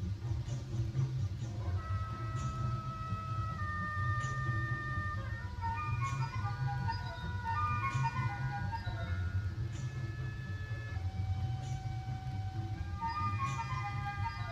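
School concert band (wind band) playing, with sustained held notes and quick runs of notes stepping downward in the middle. It is heard through a worn old tape transfer with a strong low hum under the music.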